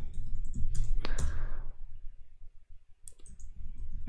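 Computer keyboard keys being typed: a quick run of key clicks in the first second or so, then a pause and a couple more clicks about three seconds in, over a steady low hum.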